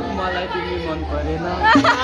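Chatter: several young voices talking over one another, over a steady low hum.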